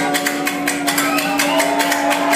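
A dubstep track played loud over a club sound system, in a breakdown. The deep sub-bass drops out, leaving one steady held synth tone and quick hi-hat ticks, with a few gliding tones higher up.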